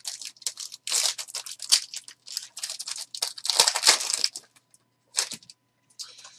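Foil trading-card pack wrapper being torn open and crinkled by hand, in irregular crackles with the longest flurry a little past the middle.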